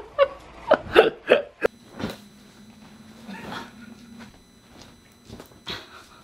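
A woman's short, breathy bursts of laughter, with a quick exclamation, in the first second and a half, then a quieter stretch with a faint steady low hum.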